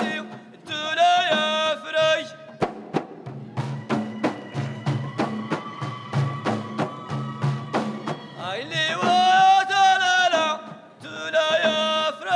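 Ahidous music: a male solo voice sings a phrase, then for about six seconds a line of bendir frame drums is struck in a steady beat of about three to four strokes a second under a held sung note, and the singing voice comes back near the end.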